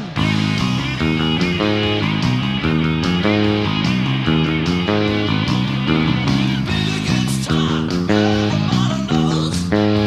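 Electric bass guitar playing a driving rock 'n' roll riff that climbs from open A through C and C sharp to E, over a rock band recording with drums and electric guitar.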